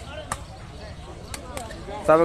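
Sepak takraw ball being struck by players' feet: three sharp smacks, one about a third of a second in and two close together past the middle, over faint crowd chatter.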